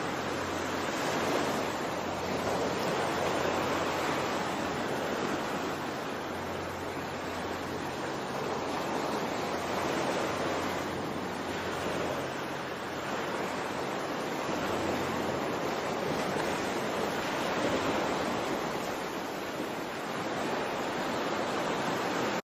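Ocean waves washing continuously, the surge swelling and easing every few seconds, with a low hum underneath.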